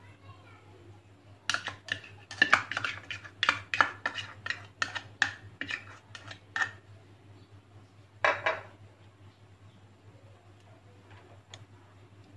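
Spoonfuls of solid ghee being scraped and tapped into a nonstick kadhai: a quick run of clinks and knocks of spoon against pan and container for about five seconds, then one more knock a little later.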